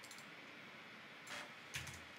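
A few faint computer keyboard key clicks over quiet room tone, spread out rather than in a steady run.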